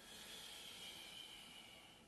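A man's long, faint exhalation through the mouth, a soft hiss that fades away over about two seconds, breathed out on the effort of pressing a Pilates ring.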